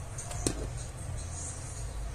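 Ribbon rustling softly as it is wrapped around the centre of a hair bow, with one sharp click about a quarter of the way in, over faint background music.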